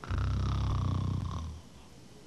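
A loud, rough low rumble that starts abruptly and dies away after about a second and a half, with a faint falling tone above it.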